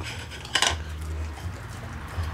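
A husky eating shredded chicken from a bowl on the ground, the bowl clattering against the paving as the dog's muzzle knocks it, loudest about half a second in.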